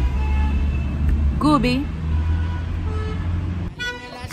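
Steady low rumble of street traffic, with one short vocal sound about a second and a half in. The rumble drops away near the end as the sound changes over to music.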